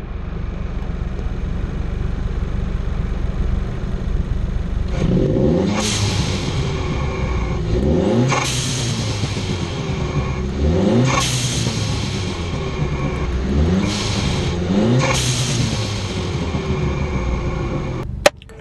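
Seat León FR engine idling, then blipped about six times from about five seconds in, each rev rising and falling in pitch. The intake is heard up close through the new open cone high-flow air filter (an Edelbrock) on a cold-air intake pipe, which makes it a little louder.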